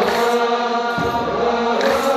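Eritrean Orthodox church chanting, a sustained sung line led over a microphone, with a deep kebero drum beat about a second in.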